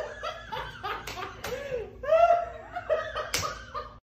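A person laughing in short, high-pitched bursts, broken by a few sharp clicks, the loudest near the end.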